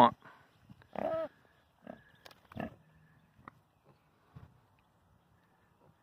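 Ossabaw hogs grunting: one short grunt about a second in, then a few fainter, scattered short grunts.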